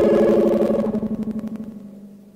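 Analog synthesizer chord (Moog type 55 and EMS Synthi 2) held and decaying, each note with a rapid pulsing tremolo. The higher notes die away about a second in, leaving a low note fading out.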